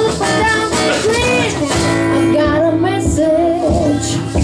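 Live acoustic song: two acoustic guitars playing chords under a woman singing the lead melody, her voice sliding and wavering in pitch.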